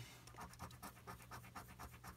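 A copper Lincoln cent scraping the silver coating off a scratch-off lottery ticket: quick, faint scratching strokes, about six or seven a second.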